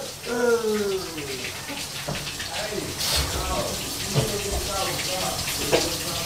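Shower running: water spraying from the head onto a tiled stall in a steady hiss that grows louder about three seconds in. A voice speaks briefly at the start.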